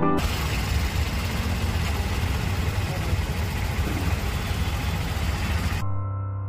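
Auto-rickshaw's small engine running, a fast low throb under steady road and wind noise, heard from inside the moving rickshaw.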